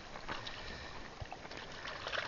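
Water sloshing and splashing around a fishing net as it is pulled by hand, with a few small knocks.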